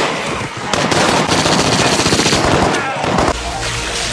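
Rapid automatic gunfire in quick bursts. It cuts off abruptly just after three seconds in, giving way to a steady rushing water spray from a fire hose over a low hum.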